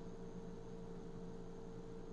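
Room tone: a steady low electrical hum with faint hiss, and no other sound.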